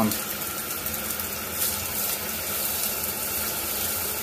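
Kitchen mixer tap running full open, a steady stream of water splashing into the sink. The hot tap is open to draw hot water from the combi boiler.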